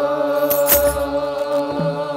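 Ethiopian Orthodox clergy chanting in unison on a long held note, with a single kebero drum beat and a jingle of sistrums about half a second in.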